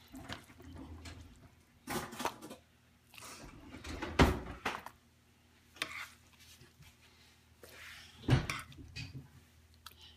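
A serving spoon scooping green bean casserole out of a glass baking dish into a bowl, with a few sharp clinks and scrapes of the spoon against the dish; the loudest come about four seconds in and about eight seconds in.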